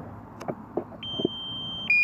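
A DJI drone remote controller sounding its low-battery warning: a steady electronic beep about halfway through, then a louder, slightly lower beep near the end, with a few faint taps before them.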